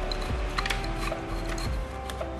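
Background music of held notes that change pitch, with a light click about two thirds of a second in.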